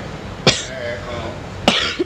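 A person coughing twice, short and sharp, about a second apart, with faint speech between.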